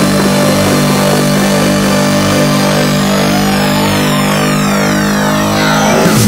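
Electronic dance music: held synth chords, with a slowly rising sweep and several high falling sweeps through the second half, building tension.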